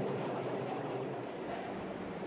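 New York City Subway 1 train pulling into an underground station: the steady noise of the cars running in on the track, heard from the platform.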